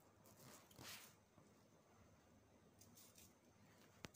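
Near silence: room tone, with one faint, brief rustle about a second in.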